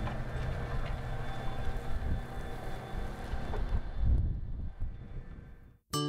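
Tractor running as it pulls a sward lifter, a steady low drone that fades away over the last couple of seconds.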